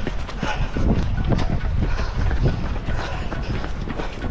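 Running footsteps on a paved path, heard from a runner carrying the camera, with wind rumbling on the microphone.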